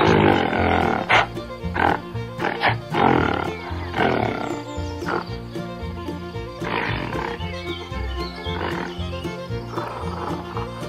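Repeated growling roars from a toy dinosaur, coming thickest in the first few seconds, over background music with a steady bass line.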